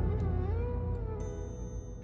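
Background music score: a soft melody with sliding notes over a low sustained tone, with a bright chime about a second in.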